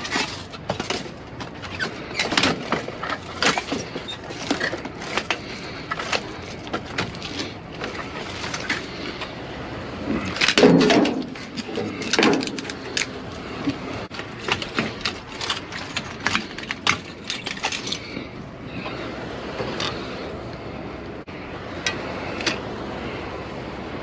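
Plastic trash bags rustling and crinkling as a gloved hand digs through garbage in a dumpster, with many short crackles, clicks and knocks. The loudest crunch comes about eleven seconds in.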